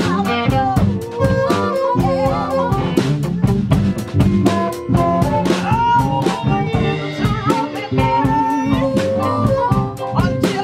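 Live blues band playing: a harmonica carries the lead line over electric guitar, bass and a drum kit keeping a steady beat.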